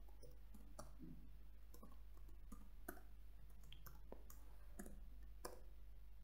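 Faint computer keyboard keystrokes: scattered, irregular clicks as a line of code is typed.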